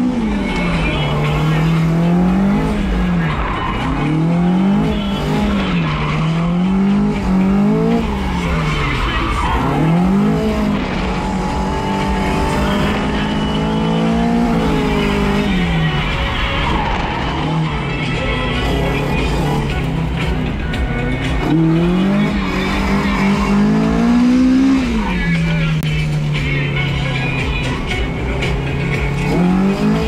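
A BEAMS-swapped Toyota AE86 Corolla's four-cylinder engine heard from inside the cabin while drifting, revving up and dropping back again and again every couple of seconds, with tyre noise from the car sliding.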